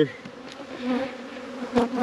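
Swarm of honeybees buzzing around open hives, a steady hum. A single short click sounds near the end.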